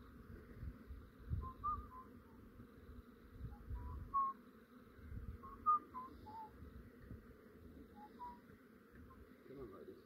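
Honey bees buzzing in a low steady hum around a hive box, freshly dumped from a cutout and not yet settled. Short high whistle-like chirps, some sliding in pitch, come every second or so, with a few low bumps of wind or handling.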